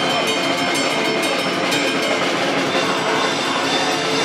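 Live punk-metal band playing loud: distorted electric guitar and bass over a drum kit, with regular cymbal strokes.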